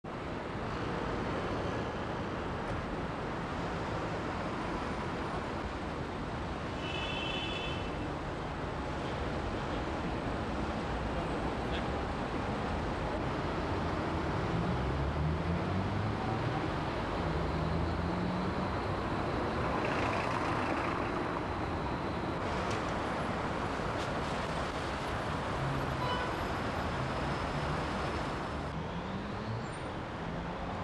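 Steady road traffic noise from a busy city square, with an engine rising in pitch as a vehicle accelerates about midway and a brief high-pitched tone about seven seconds in.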